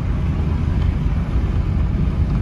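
Steady low rumble of a car driving along a city street, heard from inside the cabin: engine and road noise.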